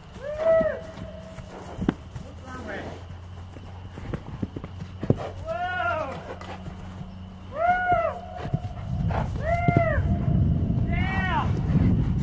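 A horse galloping on grass, the hoofbeats and low rumble growing heavier in the second half. Short high calls that rise and then fall in pitch sound about every two seconds.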